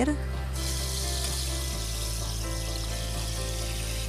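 Granulated sugar pouring from a glass into a saucepan of coconut milk: a steady hiss that starts about half a second in. Soft background music plays underneath.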